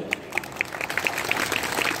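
Audience applauding: many hands clapping at once in a dense, even patter.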